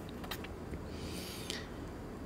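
A pause between spoken phrases: faint steady room noise, with a few soft clicks early and a brief soft rustle about a second in.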